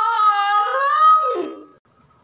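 A man's voice singing one long drawn-out note that wavers in pitch, then slides down and breaks off about a second and a half in.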